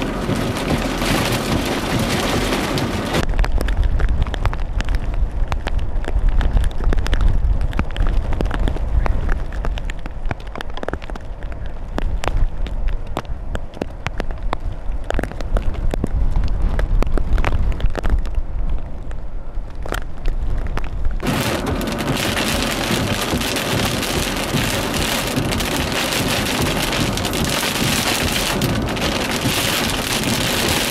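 Rain in a tornado-producing storm: for most of the stretch, many sharp raindrop taps over a deep rumble. About two-thirds in it changes abruptly to a steady rushing hiss of wind-driven rain.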